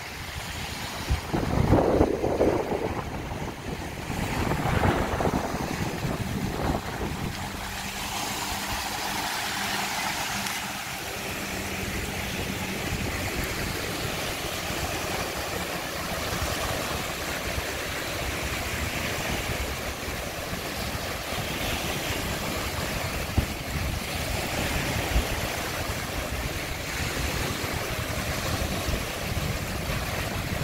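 Small waves breaking and washing up a sandy beach in a steady hiss of surf, with wind buffeting the microphone in the first few seconds.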